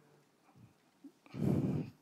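A quiet pause, then about one and a half seconds in a man's short, low vocal noise lasting about half a second: a hesitation sound without words.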